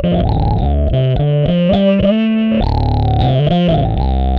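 Electric bass guitar played through the Ashdown SZ Funk Face, a 12AX7 tube overdrive and auto-wah pedal, giving a distorted, funky tone. It plays a choppy riff of short notes with a longer held note about halfway through.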